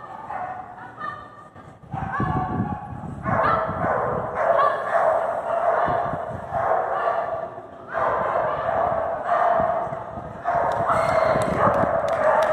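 A dog whining and yipping in drawn-out, high-pitched calls of a second or two each, with short breaks between them.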